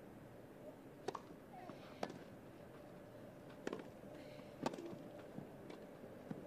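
Tennis ball struck by racquets during a rally on a grass court: four short, sharp hits roughly one to one and a half seconds apart, over a faint background murmur.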